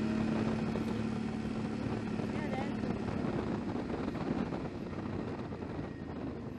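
Suzuki V-Strom 650's V-twin engine running on the move, under an even rush of wind and road noise. A steady engine tone fades out over the first few seconds.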